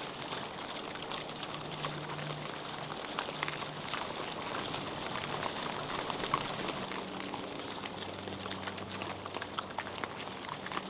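A group of feral hogs feeding on bait corn: a steady patter of small crunching and rooting clicks as they chew and nose through the pile.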